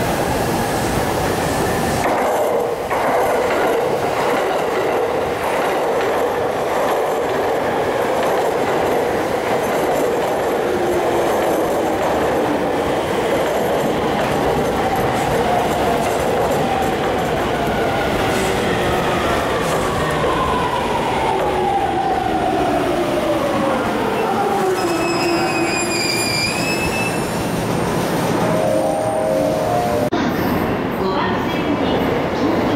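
A JR East E231-500 series Yamanote Line electric train running into the station platform. The motor whine falls steadily in pitch as the train brakes, with a brief high squeal near the end as it comes to a stop.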